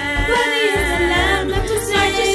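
A gospel vocal group singing in layered harmony, with a steady low bass line beneath.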